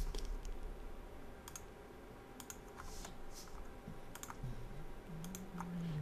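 A few faint, scattered computer keyboard keystrokes and mouse clicks, as the edited file is saved and the browser page refreshed.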